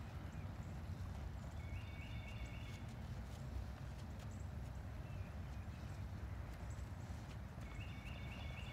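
A ridden molly mule's hooves striking soft dirt footing in an irregular series of dull steps, over a steady low rumble.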